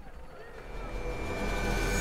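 Low engine rumble swelling steadily in loudness, with a faint steady high-pitched whine over it.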